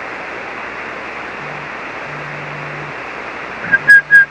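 Steady static hiss from an SSB ham radio transceiver's receive audio, cut off above about 3 kHz by the receiver's passband, with a faint low hum coming and going. Near the end come a few sharp clicks and a brief high beep.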